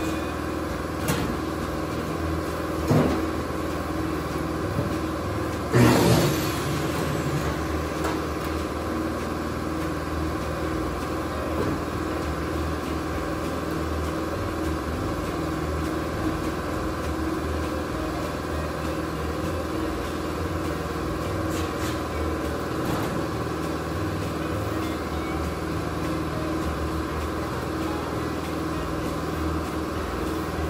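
Steady mechanical hum of shop background noise, with a few knocks and clatters in the first several seconds, the loudest about six seconds in, and a couple of faint ones later.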